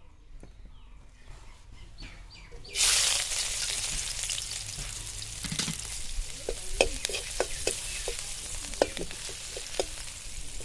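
Food sizzling in a hot pan, the hiss starting suddenly about three seconds in as it hits the oil, with clicks and taps of a utensil stirring.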